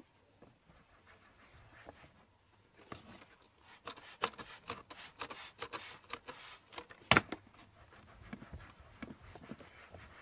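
Microfiber towel being handled and rubbed over a car's plastic under-dash panel: fabric rustling and scrubbing with many small clicks, busiest a few seconds in, and one sharp knock about seven seconds in.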